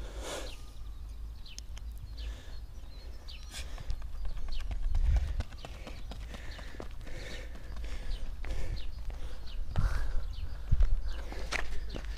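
Running footsteps of a sprinter on a rubber athletics track: quick, rhythmic footfalls, heavier around the fourth second and again near the end as he comes close.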